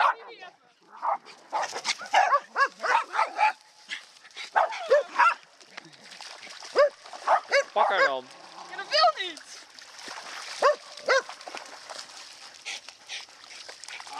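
Spitz dogs barking, a quick irregular series of short, sharp barks, many dropping in pitch, with several dogs' voices overlapping.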